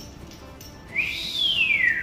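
A single whistled note starting about a second in, sweeping quickly up and then gliding slowly down for about a second, over faint background music.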